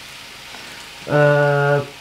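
Chopped vegetables frying in a pan with a steady, quiet sizzle. About a second in, a loud drawn-out vowel from a person's voice lasts most of a second over the sizzle.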